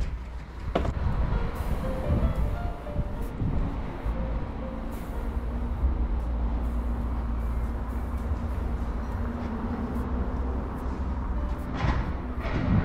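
Steady outdoor street ambience with a low rumble. A rear cargo door of a Volkswagen ID. Buzz Cargo van shuts with a thud about a second in, and a sharp knock comes near the end.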